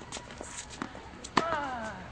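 Tennis rally: sharp pops of the ball struck by rackets and bouncing, with shoes moving on the court between them. The loudest hit comes about one and a half seconds in, followed at once by a short voice call falling in pitch.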